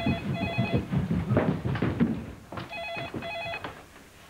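Telephone ringing with a double ring: two double rings about two and a half seconds apart. A jumble of low thuds and knocks falls between them.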